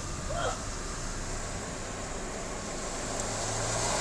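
Steady low hum and road noise of a car driving slowly along a seafront, mixed with the faint wash of waves from the beach.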